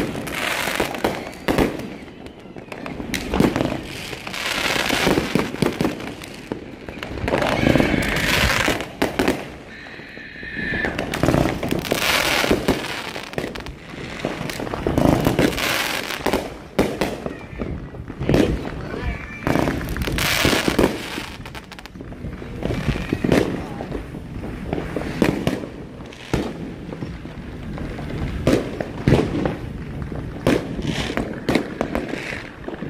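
Fireworks going off over and over: sharp bangs and crackling bursts that swell up every few seconds.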